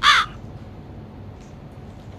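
A single short, harsh crow's caw right at the start, followed by quiet room tone.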